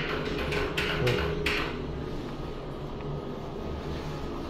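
Restroom ceiling exhaust fan running with a steady low hum, with a few short hissing noises in the first second and a half.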